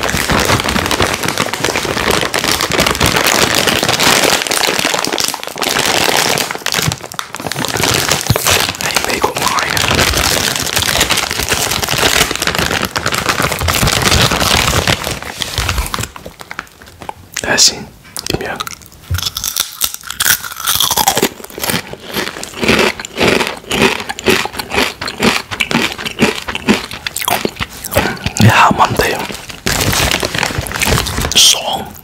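A plastic chip bag crinkling loudly close to the microphone as it is handled. For about the first half the crinkling is dense and unbroken; after that it becomes a run of separate crackles and rustles.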